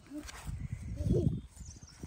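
Malamute puppy nosing and snuffling in the grass, with a short low grunt about a second in.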